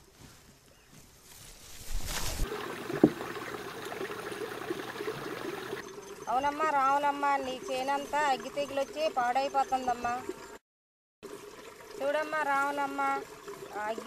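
A woman talking in Telugu. Before her voice comes a few seconds of an even rushing noise with a single sharp click in it.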